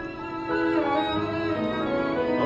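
Bowed strings playing held notes, a violin carrying the line, with a lower string part coming in about a second in.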